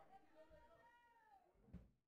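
Near silence, with faint distant voices and a soft thump near the end.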